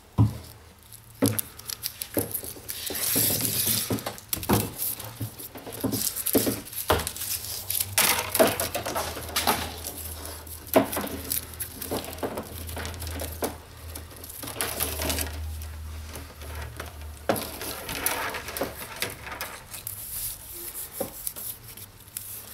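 Romex 14-3 house cable with ground being drawn by hand past the side blade of a prototype solid-wire stripper, slitting its plastic outer sheath. The sound is a series of scraping, rustling pulls broken by many clicks and clinks from handling the cable against the metal stripper.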